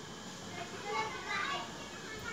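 Faint background voices, high-pitched like children's, talking a little about a second in.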